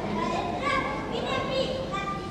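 Children's voices speaking.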